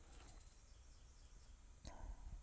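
Near silence: room tone with a faint low hum, and a faint click near the end.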